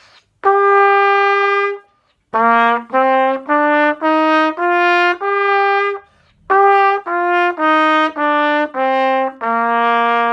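Plastic pTrumpet playing one long held note, la, then a stepwise scale of separately tongued notes rising from do (concert B flat) up to la and stepping back down to do.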